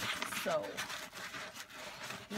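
Cardboard shipping box and packing paper rustling and scraping as the box is handled open, with a sharp click right at the start.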